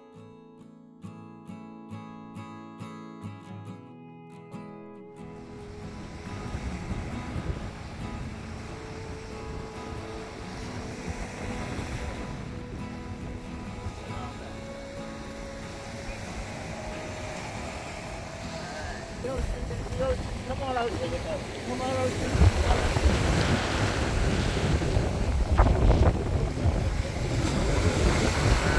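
Acoustic guitar music that cuts off about five seconds in, giving way to ocean surf washing up on the beach with wind on the microphone. The surf and wind grow louder over the last few seconds, and a voice says a single word near the middle.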